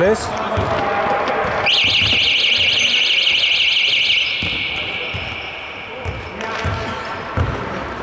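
An electronic alarm sounds a loud, fast-warbling high tone. It starts abruptly about a second and a half in and cuts off after about two and a half seconds, over low knocks of a basketball bouncing on the court.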